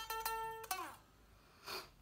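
Unamplified solid-body electric guitar: one held lead note whose pitch slides down as it fades, about three-quarters of a second in. The strings sound thin and quiet without an amplifier.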